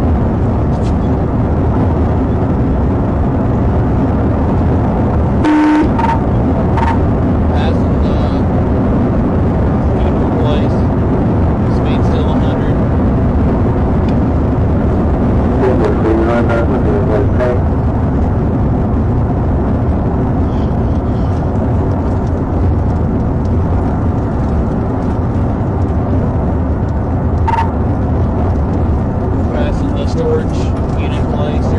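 Steady rush of road and wind noise with engine sound inside a police cruiser driving at over 100 mph. A short beep and a few brief clicks come about five and a half seconds in.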